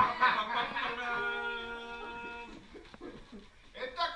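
People laughing and chuckling around a table, followed by a steady pitched tone held for about a second and a half, with a single sharp click near the end.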